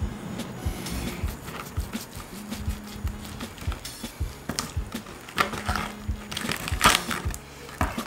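A long slicing knife cuts through the crusty bark of smoked beef ribs between the bones, with scattered clicks and knocks of the blade on the wooden cutting board. The loudest knocks come about seven seconds in, and background music with a steady beat runs under it all.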